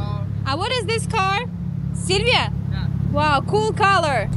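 Steady low hum of a car engine idling nearby, under people talking.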